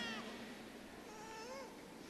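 Faint, high-pitched whimpering of an infant: a short wavering cry about a second in.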